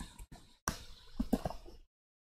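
A few faint computer keyboard key clicks: one sharp click about two thirds of a second in and a quick cluster of three or four near the end, as a sketch is saved in the Arduino IDE.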